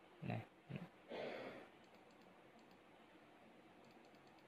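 Near silence: faint room tone with a few soft computer-mouse clicks. Near the start there are two brief low voice sounds and a short soft noise.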